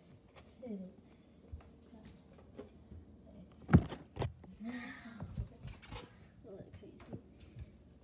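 Handling noise of a phone recording while it is moved about: a sharp knock, the loudest sound, a little under four seconds in, another about half a second later, and small clicks and rustles. A girl's voice is briefly heard about five seconds in, without clear words.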